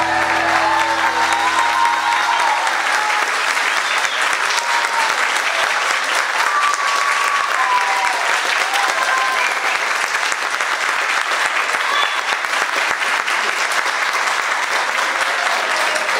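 Audience and choir applauding, a dense steady clapping with a few cheering voices; the song's last held chord dies away in the first couple of seconds.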